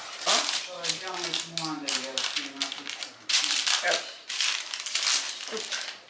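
Speech, with a run of short scraping and rustling handling noises over it.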